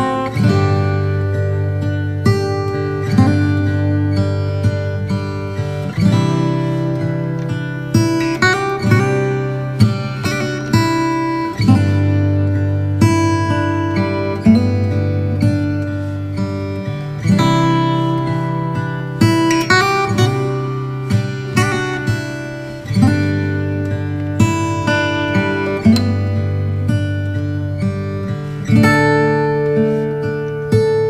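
Background music: acoustic guitar playing plucked notes over low chords that change every few seconds.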